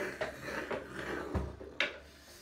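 Vocal beatboxing: short mouth clicks and breathy hisses, with one low kick-drum sound past the middle and a sharp snare-like hit near the end.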